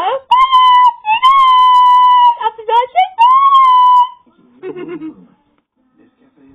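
A young child's high-pitched voice holding three long squealing notes, one after another, then a short lower voice about five seconds in.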